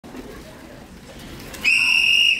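A hand whistle blown in one loud, steady shrill blast starting about a second and a half in, over faint murmur from the hall.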